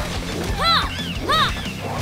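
Fight-scene soundtrack: action music with hit and smash effects as the Pink Ranger fights foot soldiers. Short rising-then-falling cries recur three times, about a second apart.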